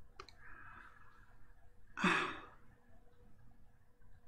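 A man's mouth click and soft in-breath, then a breathy sigh about two seconds in, lasting about half a second.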